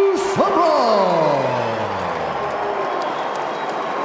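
Arena crowd cheering and applauding, with a man's long drawn-out call at the start that rises briefly and then slides down in pitch over about two seconds.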